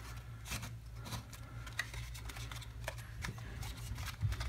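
Aluminium foil crinkling in small, irregular crackles as a loose wad is pressed into a paper pyramid, over a steady low hum.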